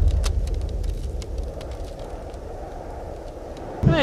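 Deep rumbling boom of a title-card sound effect, fading away over the first couple of seconds to a low hum, with faint scattered crackles above it.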